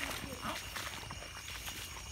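Faint footsteps and rustling as people wade through a wet, flooded rice field, with a steady high chirring of insects and faint low voices.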